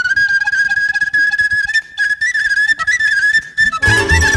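Solo wooden flute playing a high, ornamented folk melody. Just before the end the full band, fiddles and bass, comes in.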